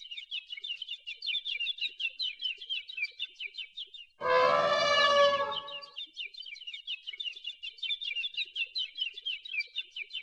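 A small bird chirping rapidly, several high chirps a second in a steady run. About four seconds in, a louder held pitched call or note sounds for about a second and a half, then the chirping carries on.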